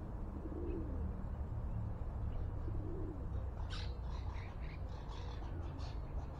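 Wild birds calling: a quick run of short, high chirps from a bird in the second half, with a few faint, low coos earlier, over a steady low rumble.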